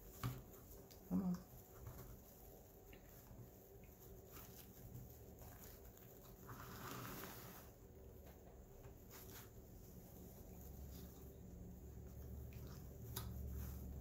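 Quiet handling of fabric ribbon: faint rustling and crinkling with a few light ticks and taps as the ribbon loops are worked around a pipe cleaner, and two short louder sounds in the first second and a half.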